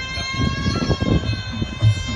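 Sarama music accompanying a Muay Thai wai kru: a pi java oboe holds a steady, reedy note over recurring low drum beats.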